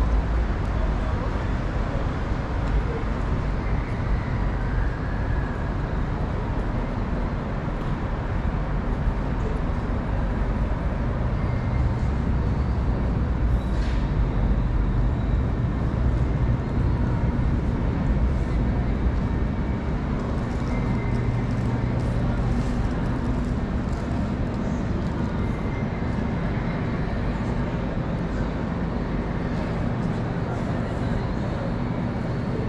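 City street traffic: a steady low rumble of engines and tyres from vehicles passing on a busy road, with voices of passers-by mixed in.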